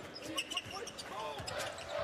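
A basketball being dribbled on a hardwood court during live play, with a few sharp bounces.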